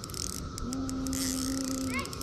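A person's voice held on one low, steady note for about a second and a half, like a drawn-out hum, over a faint high hiss.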